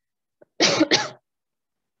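A woman coughs twice in quick succession, about half a second in.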